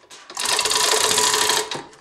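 Manual chain hoist clattering fast and evenly for about a second and a half as its hand chain is run through, the fast clicking of its mechanism and chain.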